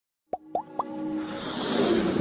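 Intro sound effects: three quick plops that each glide upward in pitch, about a quarter second apart, then a swell that grows steadily louder.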